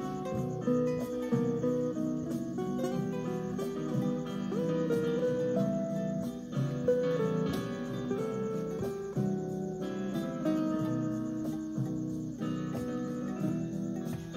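Acoustic guitar played by hand, picking out a melody over chords in an instrumental passage between sung verses.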